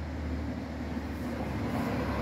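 Steady low rumble of a vehicle engine running, growing slightly louder toward the end.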